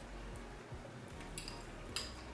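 A person quietly chewing a mouthful of noodle soup, with two faint mouth clicks in the last second, over a low steady room hum.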